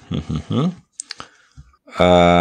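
A voice speaks briefly, then a few sharp clicks come about a second in.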